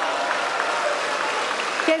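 A large crowd applauding with steady clapping.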